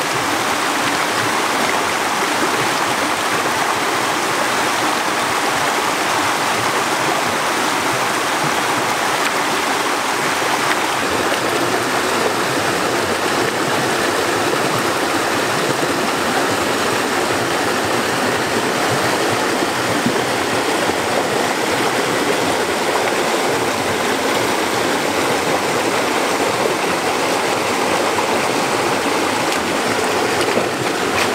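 Rocky stream rushing over small cascades: a steady wash of water.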